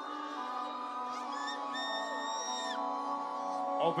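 Sustained synth chords ringing out over the festival PA between songs, with a brief higher held note in the middle.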